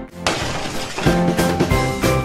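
Upbeat background music, with a glass-shattering sound effect a moment in that lasts about a second before the music carries on.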